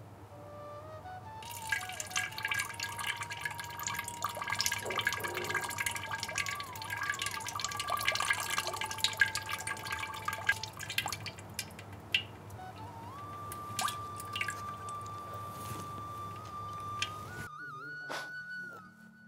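Water from a neti pot running out through the nose and dripping and splashing, dense for the first ten seconds or so and then sparse. Background music with a slow melody over a steady drone plays throughout.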